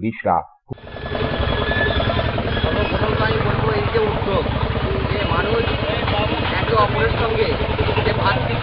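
Busy street noise: a motor vehicle's engine running close by, with people's voices in the crowd over it. It sets in suddenly just under a second in, after a narrator's voice stops.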